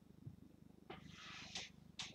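Near silence with a faint low rumble, and about a second in a brief soft crinkle of the shrink-wrapped card box being handled.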